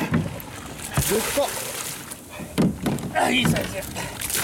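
Water rushing into a plastic cooler holding freshly caught fish, churning it to foam, with a couple of thumps against the cooler.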